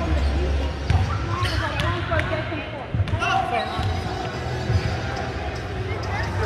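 A basketball bouncing a few times on a hardwood gym floor, with voices calling out in the hall.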